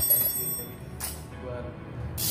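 A metal socket wrench clinks against other metal with a sharp click and a brief high ringing tone, then a second, softer knock about a second in.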